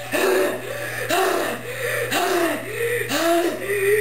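A boy's voice making a steady run of short wordless sounds, each one rising and falling in pitch, about two a second.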